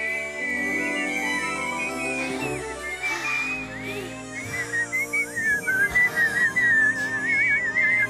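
High, sustained whistling over soft background music. Several pitch glides come in the middle, and in the second half the whistle wavers quickly up and down.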